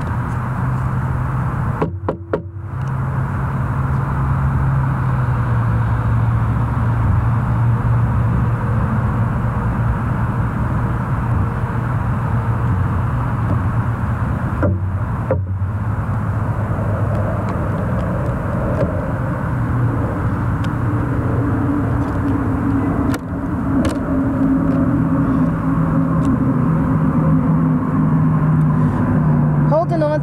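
Steady rumble of road traffic with a low engine hum that shifts in pitch now and then. The sound briefly drops out about two seconds in and again about fifteen seconds in.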